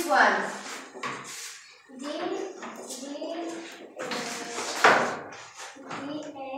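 Children's voices talking and calling out, mixed with light knocks and clatter as foam alphabet mat tiles are handled; the loudest moment is a sharp call about five seconds in.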